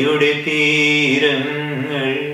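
A man singing a Carnatic-style phrase in raga Abhogi, holding one long vowel note with a brief wavering ornament about halfway through.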